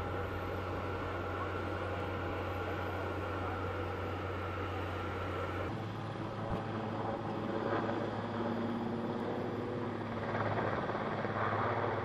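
Helicopter running, its turbine giving a steady whine over the engine and rotor noise. The sound changes abruptly about halfway through, and the whine drops away.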